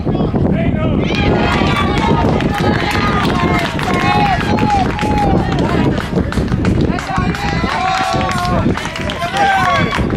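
Several people at a youth baseball game shouting and cheering at once, voices overlapping and rising and falling, as a batted ball is run out to first base.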